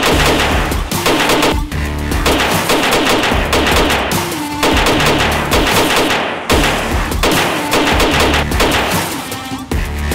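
Repeated 9 mm pistol shots from a braced Glock 17, fired at a fast pace, under loud background music with a heavy repeating bass beat.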